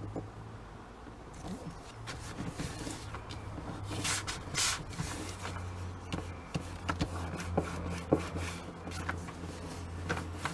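Hands pressing and smoothing a freshly glued sheet of paper onto card: soft paper rubbing and rustling, with a louder rustle about four seconds in and a few light taps, over a steady low hum.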